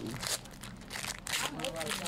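Foil wrapper of a baseball card pack crinkling as it is handled and pulled open, in several crackly bursts, loudest about a second in.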